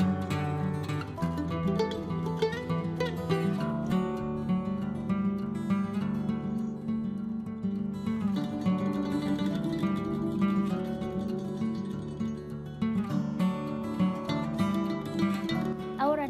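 Background music: an acoustic guitar playing a steady run of plucked and strummed notes.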